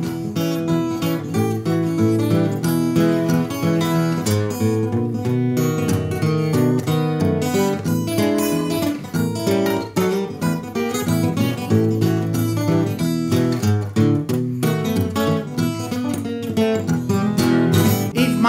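Solo all-mahogany acoustic guitar, fingerpicked with steady bass notes under a busy treble melody, playing an instrumental break in a country-blues style.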